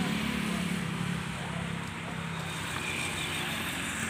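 A motor vehicle engine running with a steady low hum that fades after about a second and a half, over steady background noise.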